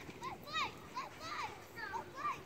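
Faint, high-pitched children's voices: a quick run of short cries that each rise and fall, several a second.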